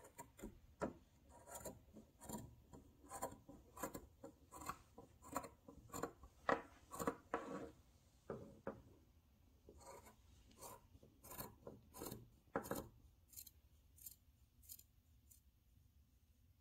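Fabric scissors cutting fringe into a cloth scarf: a string of faint snips, about one or two a second, that grow fainter after about thirteen seconds.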